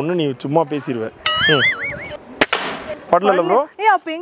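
A single sharp crack of an air gun being fired, with a short hissing tail, about two and a half seconds in. Just before it, a warbling tone lasts about a second.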